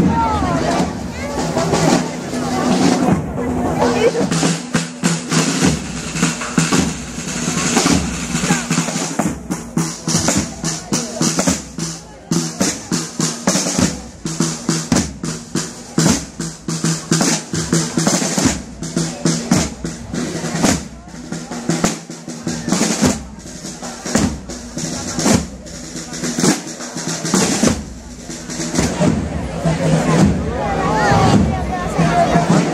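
Marching band drum section playing: snare drums rolling and rapping with bass drum strokes, in a dense, steady rhythm.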